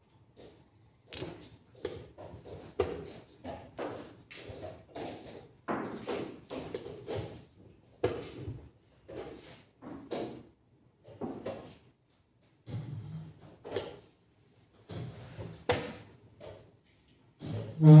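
Wooden chess pieces being set down and a chess clock being pressed during a fast blitz game: a string of irregular knocks and clacks with short pauses between them.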